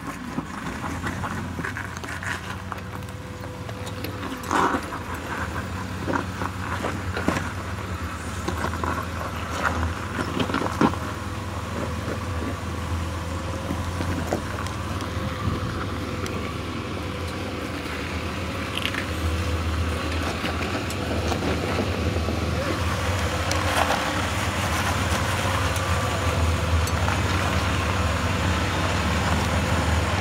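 Jeep Wrangler's engine running at low revs as it crawls over rock, a steady low drone that slowly grows louder as it comes closer. A few sharp knocks in the first half.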